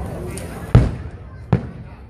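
Two aerial firework shells bursting with sharp booms. The first, about three quarters of a second in, is the louder; the second follows under a second later, each with a short echoing tail.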